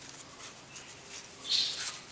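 Faint rustling and crinkling of a folded paper strip being handled, with a short louder rustle about a second and a half in.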